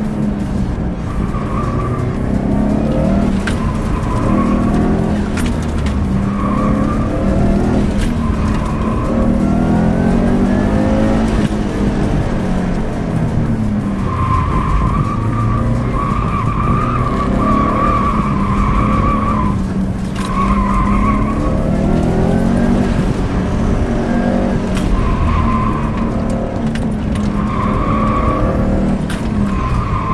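A 2007 Subaru STI's turbocharged flat-four engine, heard from inside the cabin, revving up and down as the car is driven hard through an autocross course. The tires squeal in repeated bursts while cornering at the limit of grip, the longest lasting several seconds about halfway through.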